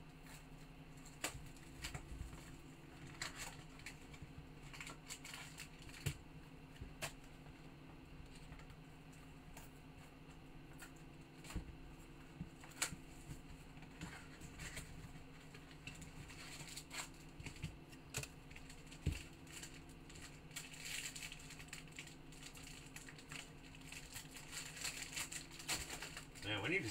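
Faint crinkling and tearing of the plastic wrap on a sealed trading-card box, with scattered small clicks and taps from handling, over a low steady hum. The crinkling is thickest near the end.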